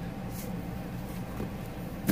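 Steady low background hum, with a faint brief rustle a little way in as hands handle a paper-covered portfolio box on a tabletop.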